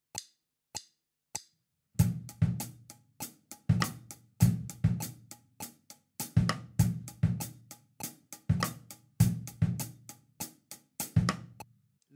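Drum kit playing a two-bar rock groove to a metronome at 100 BPM: hi-hat in steady eighths, a syncopated bass drum figure and cross-stick on the snare. A few metronome clicks count in first, and the kit comes in about two seconds in.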